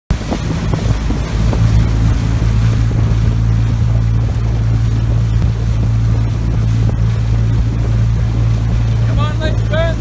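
Coaching launch's outboard motor running steadily, a constant low hum. A voice shouts near the end.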